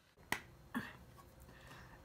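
A single sharp click from a plastic makeup palette's lid snapping open, about a third of a second in.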